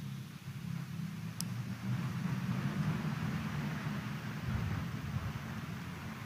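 Steady low rumble and hiss of a large church's room tone, with one faint, brief high click about a second and a half in.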